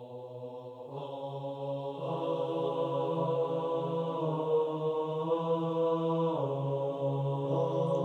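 Slow devotional background music of sustained, chant-like held notes that fade in and swell. The drone shifts to new notes a few times.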